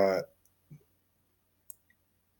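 A man's hesitant "uh" trailing off, then a pause of near silence broken by one faint short click about three-quarters of the way through.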